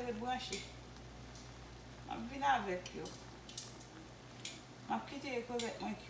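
Metal kitchenware clinking: about four sharp clinks of a pot and utensils, spread over a few seconds.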